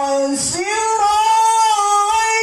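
A man reciting the Quran in the melodic tilawah style in a high voice, holding long drawn-out notes. A held note breaks off about half a second in, and a higher note is then sustained with a slight waver.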